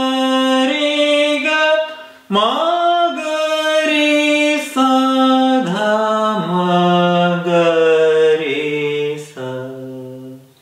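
A man singing the notes of raga Abhogi alone, unaccompanied, in sargam syllables, holding each note and moving between them in steps. There is a short break about two seconds in. In the second half the notes fall step by step to a low note near the end.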